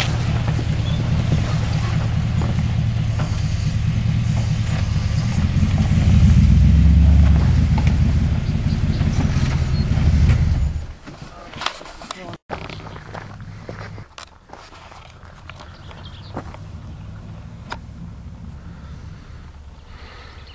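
Chevrolet pickup truck's engine running under load as the truck crawls over rocks, getting louder for a couple of seconds around the middle, then dropping away about eleven seconds in. After that there is only a much quieter outdoor background with a few faint clicks.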